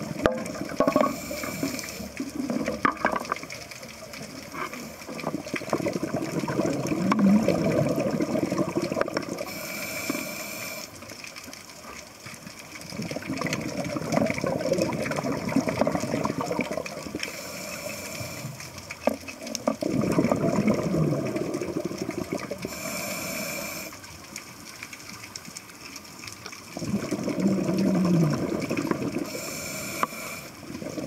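Scuba diver breathing through a regulator underwater: a short hissing inhale, then a long bubbling exhale. About four breaths, one every seven seconds or so.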